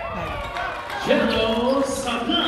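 A commentator's long, held shout over the sounds of a basketball game on the court, including ball bounces.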